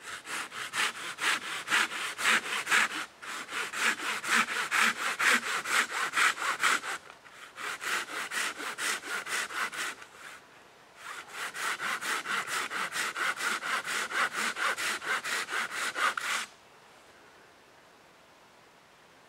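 Folding hand saw cutting through a small green tree trunk: quick back-and-forth strokes, about three a second, in runs with short pauses. The sawing stops near the end.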